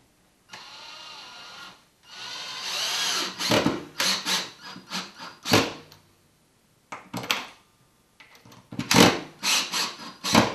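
Cordless drill-driver running a wood screw through a wooden mounting block into the wall stud. The motor runs steadily at first, then louder, with its pitch bending as the screw bites. A run of short, sharp clicks and knocks follows in clusters through the second half.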